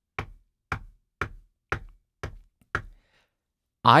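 Knuckles knocking on wood six times, evenly, about two knocks a second, a "knock on wood" for luck.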